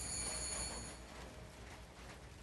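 A small bell struck once: a faint, high, clear ring that fades out about a second in.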